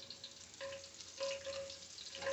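Faint sizzling and light crackling of oil in a cast iron pot with green onion, garlic and bay leaves in it, heating to infuse the oil.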